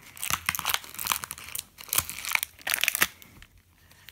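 Clear plastic blister packaging crinkling and crackling in irregular bursts as a small toy figure is handled in it, dying away over the last second.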